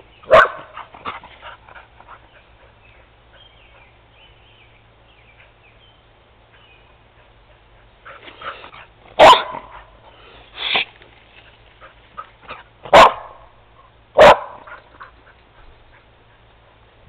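Dog barking: one bark just after the start, then, after a quiet stretch, four loud, sharp barks a second or two apart in the second half.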